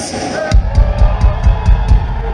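Live rock band in a hall: the crowd cheers, and about half a second in the drums come in with a quick run of heavy bass drum beats, about four to five a second, under the band's sustained noise.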